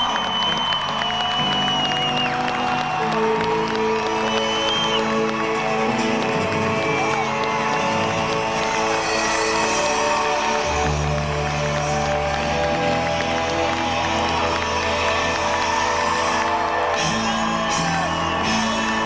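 Live pop-rock band playing, with drum kit and upright bass, and a crowd cheering over the music.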